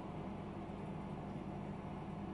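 Steady low hum with a faint even hiss: room tone, with no distinct event.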